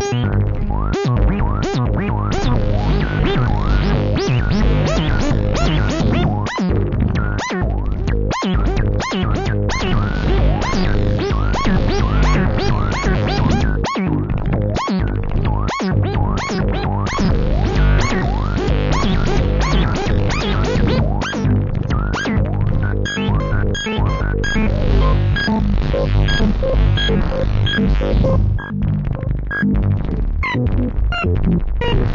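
BugBrand BugModular synthesizer playing a sequencer-driven patch: a fast, continuous stream of short notes with gliding pitches over steady low tones.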